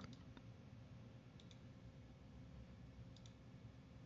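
Near silence: faint room tone with a low steady hum, broken by two faint double clicks of a computer mouse, about a second and a half and three seconds in.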